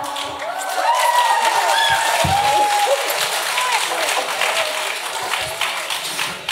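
Audience applause with many hands clapping, mixed with raised, cheering voices.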